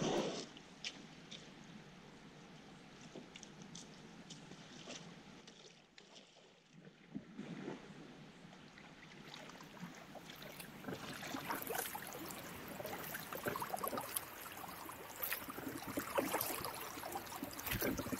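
Faint water sounds of a sea kayak being launched and paddled on calm water. At first there are only quiet trickles and drips. From about halfway, paddle strokes splash and drip more often and louder.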